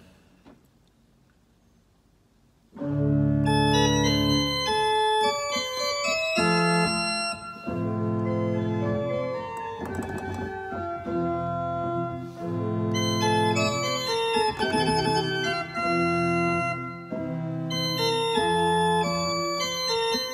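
Organ playing a short ornamented lesson piece, with several notes held together over low bass notes and trills among them; it starts about three seconds in after near silence.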